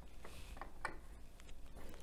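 A few faint plastic clicks and taps as Duplo flower pieces are pressed onto a Duplo baseplate.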